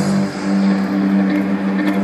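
Amplified stadium concert sound: a steady low drone of two held tones over a wash of noise, with no clear melody or singing.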